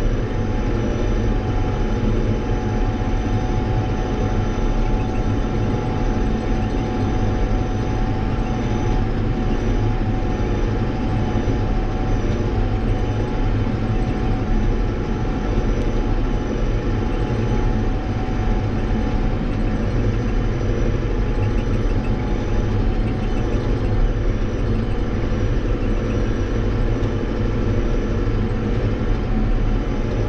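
Case IH tractor's diesel engine running at a steady speed, heard from inside the closed cab while driving, an even drone with a thin high whine over it.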